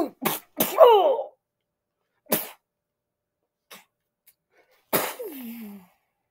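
A person laughing in short breathy bursts: several in the first second or so, a single one about two seconds in, and a longer breathy laugh near the end that trails down in pitch.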